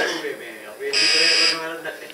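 A short, steady electronic buzz lasting under a second, starting about a second in.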